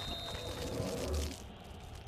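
Sound effects of an animated TV-programme logo: a high whistle-like tone fading out in the first second over a swishing noise, a low thud a little after a second in, then the sound dying away.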